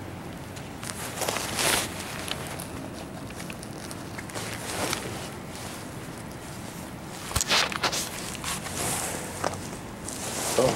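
Scuffing and rustling close to the microphone, with a few sharp clicks, loudest in two clusters, one about a second and a half in and one about seven and a half seconds in, over a steady low hum.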